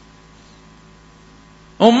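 Low, steady electrical mains hum from the sound system in a pause of a man's speech; his voice comes back in near the end.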